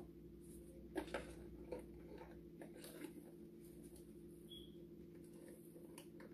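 Faint, scattered light taps and rattles of a seasoning shaker being shaken over glass canning jars, a little louder about a second in, over a steady low hum.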